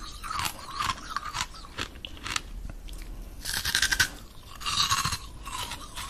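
Coloured ice being bitten and chewed, with irregular crunching and crackling; the loudest crunches come in two clusters, about three and a half and five seconds in.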